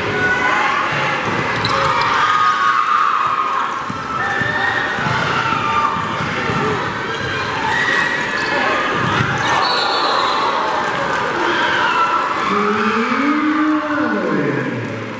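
Basketball bouncing on a hardwood gym court, with a crowd's shouts and chatter echoing in the large gym.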